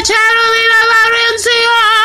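A woman singing unaccompanied in a slightly hoarse voice, holding one long note and then a second that wavers with vibrato.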